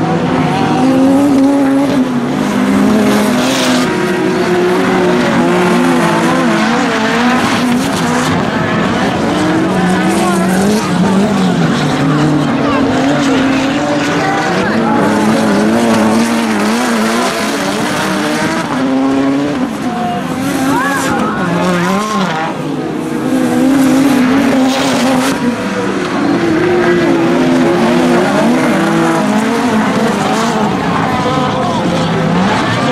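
Several touring-class autocross cars racing on a dirt track, their engines revving up and down over and over as they accelerate and lift through the corners. Loud throughout.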